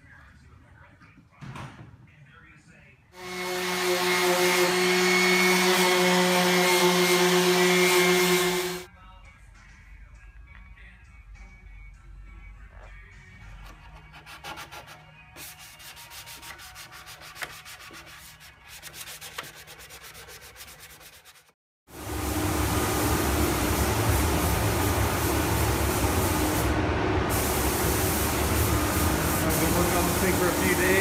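Sanding cured body filler on a plastic dash bezel. A hand-held electric sanding tool runs with a steady whine for about six seconds. Later come quick, rhythmic hand-sanding strokes, and in the last eight seconds a louder, steady stretch of noisy machine sound.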